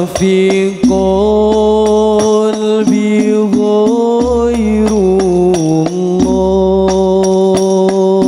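Male voices chanting an Islamic sholawat melody in unison, holding long notes that step between pitches, with rebana frame-drum strikes that become more frequent near the end.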